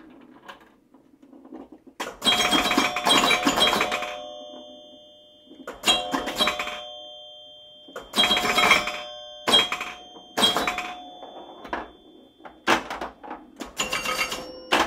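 Bright bell-like chimes struck in quick clusters every one to two seconds, their clear tones ringing on between the clusters.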